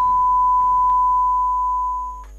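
A steady electronic beep tone held at one unchanging pitch.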